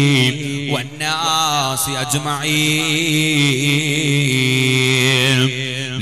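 A man's voice chanting a melodic Islamic recitation over a public-address system, with wavering, drawn-out phrases and then one long held note from about two and a half seconds in until shortly before the end.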